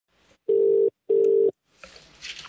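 British telephone ringback tone heard down the line: one double ring, two short steady tones in quick succession, as the number rings at the far end. A faint hiss of the line comes in near the end.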